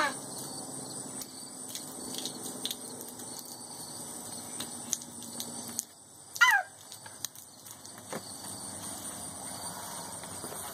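Crickets chirring steadily in a high, even band. A short cry falling in pitch sounds at the start and again about six and a half seconds in, the loudest moments, with a few faint clicks between.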